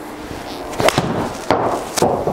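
A few sharp cracks of golf shots in an indoor simulator bay, the loudest about one and a half seconds in, over a steady background hiss.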